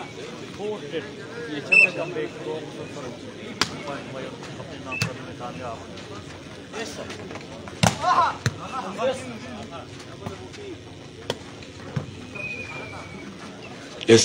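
Volleyball rally: the ball is struck by players' hands and forearms several times, each hit a single sharp smack, over a steady hubbub of spectators' voices. The loudest hit comes about eight seconds in, followed by a brief burst of shouting.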